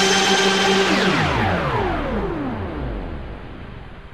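TV channel ident music: a held chord that, about a second in, gives way to many falling pitch sweeps and fades out.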